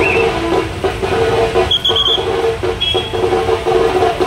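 Loud street-procession din: music with a sustained, repeating melody played over a truck-mounted loudspeaker, over a steady low rumble of crowd and vehicle noise. A few short high tones sound about two seconds in.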